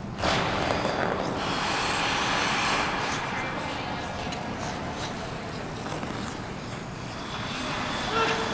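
Figure skate blades scraping and hissing on rink ice as loops are skated: a steady noisy hiss that starts sharply and eases a little later on, with a few faint clicks.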